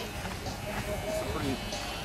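Corded electric hair clippers buzzing steadily as they cut through short hair, under faint background voices.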